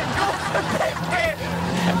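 A towing vehicle's engine running steadily, with voices shouting over it.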